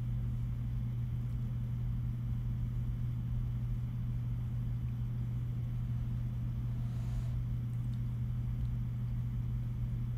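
A steady low hum and rumble that does not change, with a faint brief hiss about seven seconds in.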